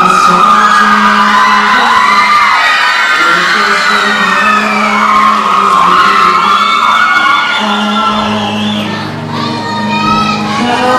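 Instrumental intro of a ballad backing track, a sustained low note held and a deeper note joining near the end, under an audience cheering and shrieking with high cries that rise and fall.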